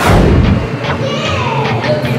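A single loud boom right at the start, dying away over about half a second, with music playing throughout.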